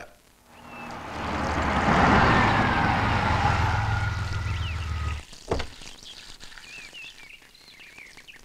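A car pulls up with its engine running, and the engine stops abruptly about five seconds in. A single thunk follows, then faint bird chirps.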